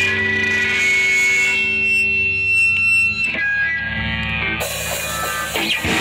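Live electric guitar through an amplifier and effects, playing long held, ringing notes with distortion; the notes change about halfway through, and near the end a short sweep leads into a fuller, denser sound.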